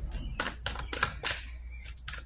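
Oracle cards being handled by hand: an irregular run of about seven short, sharp clicks and snaps.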